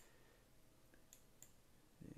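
Two faint computer mouse clicks a little after a second in, over near-silent room tone.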